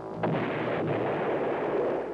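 A BGM-71 TOW anti-tank missile firing: a sudden blast about a quarter second in, then steady rushing noise from the rocket motor that holds level and cuts off near the end.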